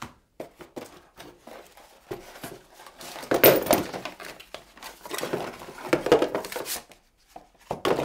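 Cardboard packaging being handled: rustling and scraping of box flaps and inserts, with many light knocks. It is loudest about three and a half seconds in, as an inner box is pulled out of its cardboard insert.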